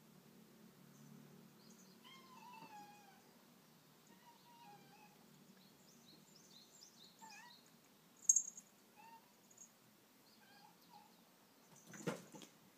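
Faint cat meows: one long wavering call about two seconds in, then several short chirp-like calls spaced through the rest. A brief sharp high sound comes about eight seconds in.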